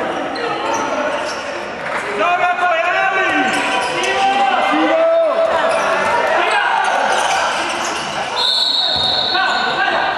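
Handball game in a sports hall: the ball bouncing on the court amid players' voices, then one steady, high referee's whistle blast lasting about a second, some eight seconds in.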